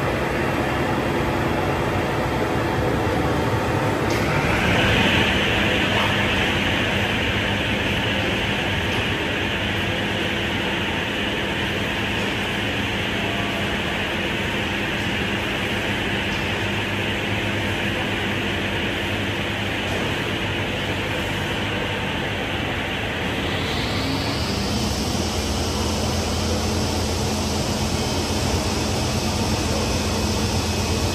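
Seydelmann K604 bowl cutter running empty with a steady mechanical whir. It steps up in pitch about four seconds in, and shifts again with a deeper hum added at about twenty-four seconds, like changes of knife or bowl speed.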